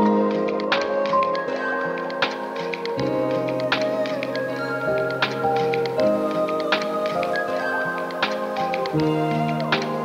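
Chill lo-fi hip hop music: held, mellow chords that change about every three seconds, under light, crisp tapping clicks in the beat.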